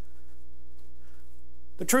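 Steady electrical mains hum with a few faint, steady higher tones above it. A man starts speaking near the end.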